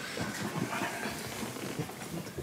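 Clothing rustling and soft shuffling as a patient lies back on an examination couch and her shirt is lifted, a run of small irregular crackles and faint bumps.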